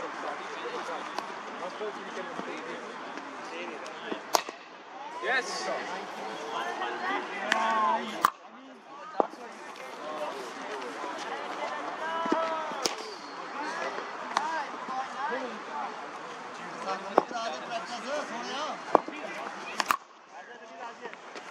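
Several sharp knocks a few seconds apart, cricket ball impacts in the practice net, over continuous background chatter of voices.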